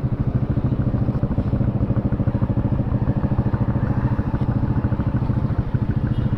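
Single-cylinder motorcycle engine idling steadily at close range, with a fast, even pulse.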